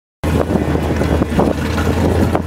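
Plymouth 'Cuda's V8 idling with a low, steady rumble as the car creeps forward, with wind buffeting the microphone.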